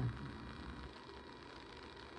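Quiet room tone: a faint steady hiss with a low hum, after the tail of a woman's voice fades out at the very start.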